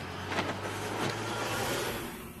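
A steady whirring noise with a low hum underneath, like a small electric motor running, with a brief whoosh about half a second in.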